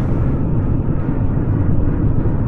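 Steady low rumble of small submarines' motors running underwater, a film sound effect.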